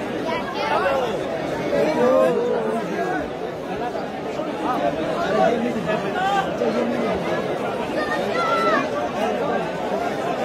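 Crowd chatter: many voices talking at once, none standing out.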